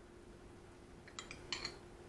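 A spoon clinking against a bowl four quick times in the second half, while ground beef is spooned out onto bread.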